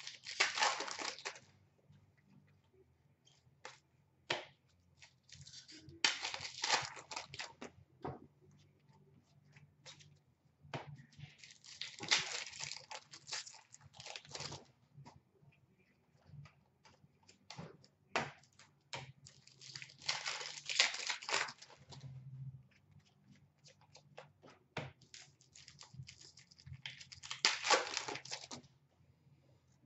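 Hockey card pack wrappers being torn open and crinkled by hand, in five rustling bursts several seconds apart, with small clicks of cards being slid and flicked through between them.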